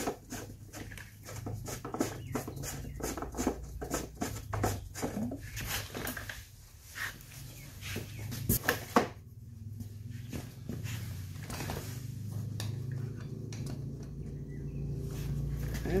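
Hand work on motorcycle fittings: a rapid, irregular run of small clicks and knocks over the first six seconds, a single sharp knock a little past halfway, and scattered clicks after, over a steady low hum.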